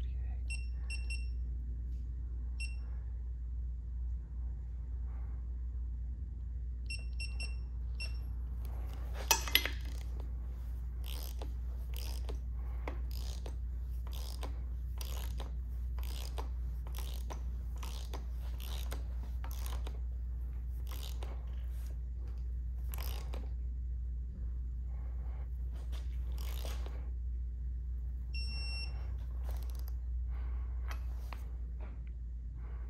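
Digital torque wrench beeping in short runs of high beeps near the start, about seven seconds in and near the end. Between them comes a long run of ratchet clicks and knocks as bolts are tightened, the loudest knock about nine seconds in, over a steady low hum.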